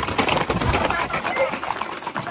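Galloping horses' hooves clattering on a paved road as a group of riders passes close by, loudest in the first second and fading after, with people's voices.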